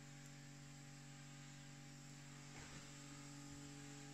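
Near silence: only a faint steady hum and hiss.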